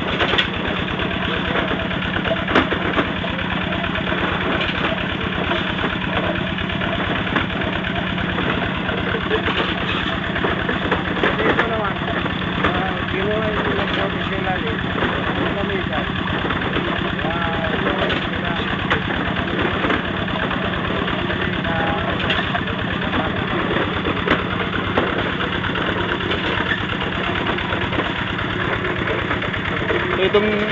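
A small engine running steadily at idle-like speed, a constant hum throughout, with faint voices in the background.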